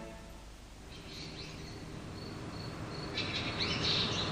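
Birds chirping in a garden: a run of short, high, evenly repeated chirps from about a second in, and a louder burst of quick chirps near the end. The tail of a music sting fades out just at the start.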